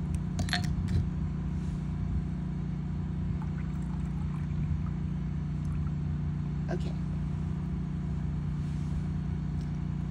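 A few light clicks and knocks of a small brass coffee pot (cezve) being handled, the sharpest about half a second and a second in and another near seven seconds, over a steady low background hum.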